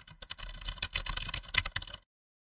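Rapid, irregular clicking like keys being typed, a typing sound effect that goes with text appearing on screen.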